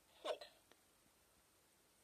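A children's learning tablet toy speaks one short recorded word, an English number, about a quarter second in, as its button is pressed with a pencil tip. A faint click follows soon after.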